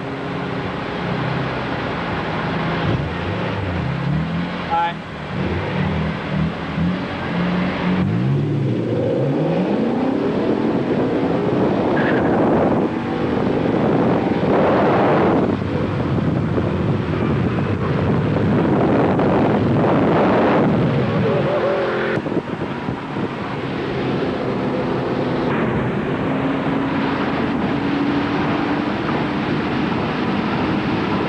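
BMW M3 and M5 engines at a stoplight, revving in short blips, then launching about eight seconds in and accelerating hard up through several gears, the pitch climbing and dropping at each shift. The run eases off a little after twenty seconds into a steady engine drone, heard from inside a car's cabin.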